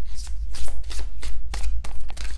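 Hands shuffling a deck of large tarot cards, a quick irregular run of card snaps and slides, over a steady low hum.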